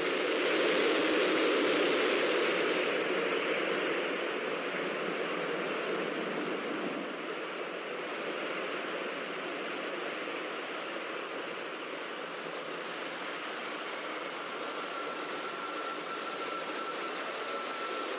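Steady rushing of the launch pad's water deluge spraying beneath the Super Heavy booster, brighter and louder for the first few seconds and then settling.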